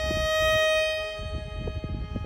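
Background fiddle music holding one long, steady note, with a low rumble underneath.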